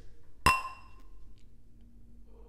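Two stemmed glasses of beer clinking together once in a toast, ringing briefly.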